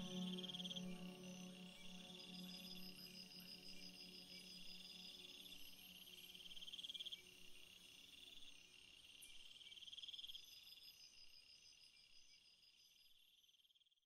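Faint night insects, crickets, chirping in pulsed trills about a second long every few seconds, under soft sustained ambient music that fades out in the first few seconds. Everything fades away toward the end.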